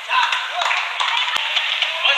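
Badminton rally at the end of a point: one sharp racket-on-shuttlecock hit about 1.4 seconds in, over crowd voices and clapping in the arena.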